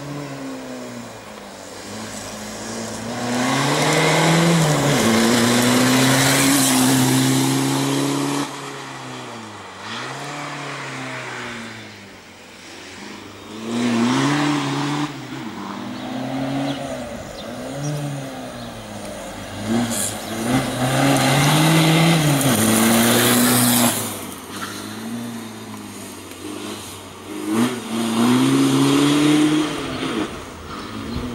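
Racing car engine revving hard and lifting off over and over while it weaves through a tight cone slalom, its pitch climbing and dropping every second or two.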